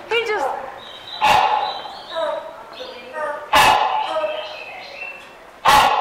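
Three loud, barking hornbill calls about two seconds apart, each starting sharply and dying away with an echo in the hall. A quick run of higher, falling chirps comes right at the start.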